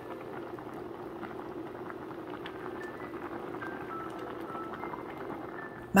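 Pot of barley makjang stew bubbling at the boil: a steady simmering hiss with a constant patter of small bubble pops.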